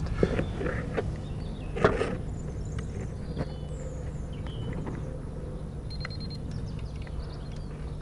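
Low steady outdoor background hum with a few light clicks and rustles as gloved hands handle test leads at a floodlight, the clearest click about two seconds in. A brief high, pulsed tone sounds about six seconds in.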